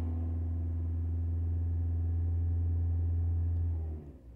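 Toyota car engine held at raised revs with the accelerator pressed, a steady low drone heard inside the cabin. It drops away sharply at the very end as the throttle is let off.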